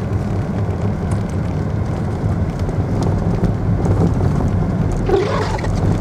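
Car running along a snowy street, heard from inside the cabin: a steady low rumble of engine and road noise.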